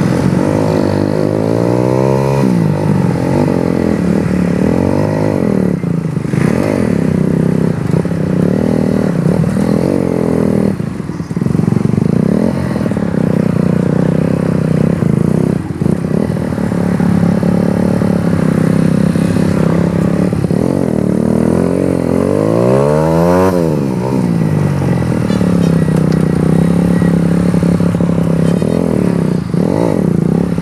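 Trail motorcycle engine heard from the rider's seat, its pitch rising and falling over and over as it revs up and eases off at low speed behind traffic. About three-quarters of the way through it revs sharply up and drops back.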